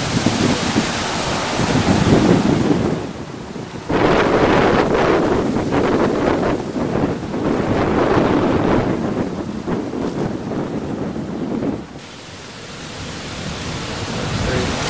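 Wind buffeting the microphone: loud, gusty rumbling noise that eases briefly about three seconds in, comes back suddenly a second later and drops away near the end.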